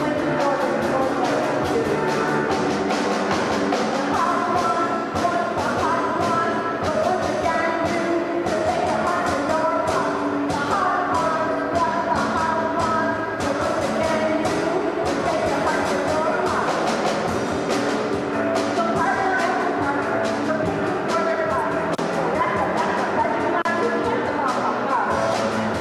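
Live rock band performing: a woman singing lead over electric guitar and a drum kit with cymbals, at a steady full level.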